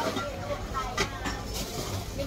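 Street background: faint voices and a low steady rumble of traffic, with a sharp click about a second in.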